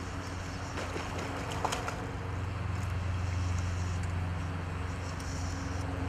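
A motor running steadily in the background with a low, even hum that swells a little in the middle, and a couple of faint clicks about one and two seconds in.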